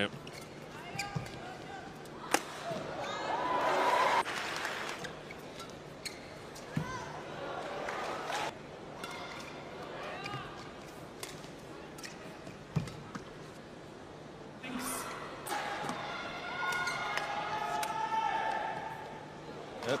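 Badminton rallies: repeated sharp cracks of rackets hitting the shuttlecock, with squeaks of players' shoes on the court floor between strokes.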